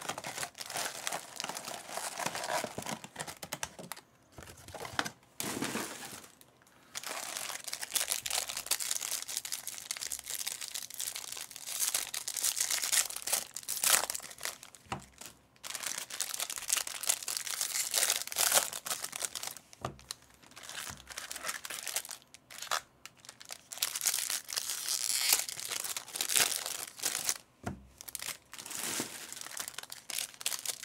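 Foil wrappers of 2024 Topps Series 2 baseball card packs crinkling and tearing as the packs are ripped open and handled, in irregular spells with short pauses.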